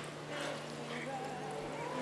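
Indoor arena background: a steady low hum under indistinct voices, with a cutting horse's hooves in the arena dirt as it works a cow.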